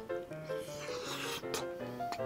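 Light background music, a simple melody of short steady notes. Under it, from about half a second in, comes the crunchy noise of a bite and chewing into a crispy rice-paper-wrapped sausage skewer.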